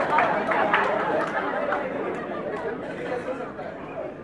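Indistinct overlapping chatter of people talking in a hall, with no clear words, fading steadily quieter.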